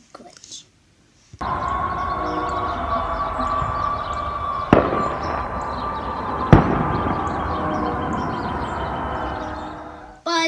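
Neighbourhood noise-making outdoors: a long held horn-like tone over a steady din of noisemakers, starting about a second and a half in. Two loud sharp bangs, a couple of seconds apart, come near the middle.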